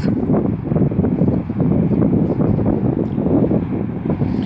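Wind blowing across a phone's microphone: a loud, low noise that gusts unevenly.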